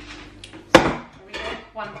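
Stainless steel pots and lids clanking as a large stockpot is pulled out of a low cupboard: one sharp metal clang about three-quarters of a second in, then a few lighter knocks.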